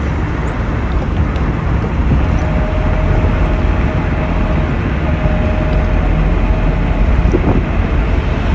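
Steady road noise of a car driving, tyre and wind rumble heard from inside the car. A faint steady whine sounds for a few seconds in the middle.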